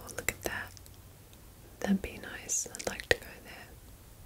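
Soft, close-miked whispering in two short phrases, with a few sharp clicks among them.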